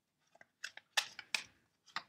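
Tarot cards being handled and pulled from the deck: a quick series of short, crisp card snaps and flicks, the loudest about a second in.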